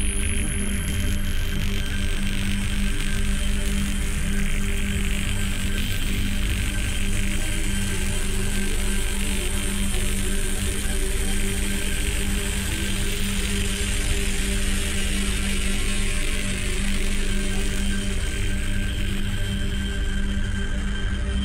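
Industrial electronic music: steady droning tones held under a dense, grainy, clicking noise texture, with no beat breaks or pauses.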